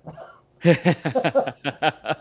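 A man laughing: a fast run of short "ha" bursts, about six a second, starting about half a second in, at the punchline of a joke.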